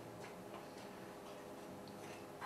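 Faint ticking of a wall clock in a quiet room, over a steady low hum.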